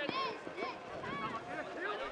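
Distant voices calling out across a football pitch: short high shouts, one after another, from players on the field.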